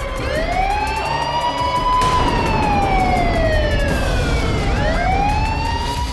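Siren wailing: its pitch climbs slowly, falls away over a few seconds, then starts climbing again near the end.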